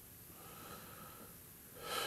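A man breathing: a faint breath, then a louder breath near the end.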